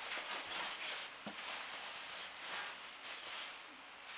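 Faint rustling movement noise, uneven in level, with a soft tap about a second in.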